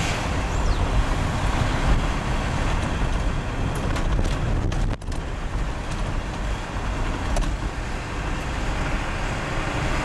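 Steady low rumble of engine and road noise inside the cab of a moving diesel truck in city traffic, with a few faint clicks about four to five seconds in and again near seven seconds.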